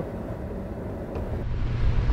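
Low, steady rumble of a 4x4 stopped with its engine running. About one and a half seconds in, it gives way suddenly to a louder, rising rumble of the vehicle driving on a dirt track.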